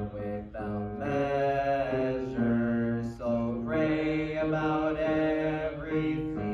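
Congregation singing a hymn in long held notes, the pitch stepping from one sustained note to the next about every second.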